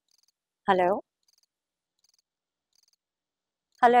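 Faint cricket chirping: short high trills repeating roughly once a second.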